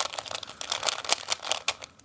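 A 3x3 Rubik's cube being turned quickly by hand, its plastic layers clicking and clattering in a rapid run of turns that thins out near the end.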